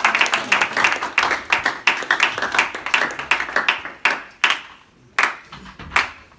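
Small audience applauding, dense clapping that thins out about four seconds in to a few scattered claps.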